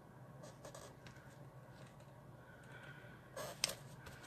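Cardstock being handled and pressed flat by hand on a craft mat: faint paper rustling, with a brief, sharper rustle and tap about three and a half seconds in as the glued white insert is set onto the black card base.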